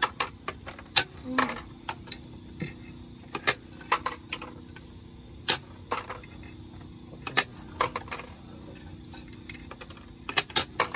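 Plastic game discs clicking and clattering as they are shot from hand-held launchers into a plastic grid and land on a wooden table. The sharp clicks come irregularly, about every half second to second.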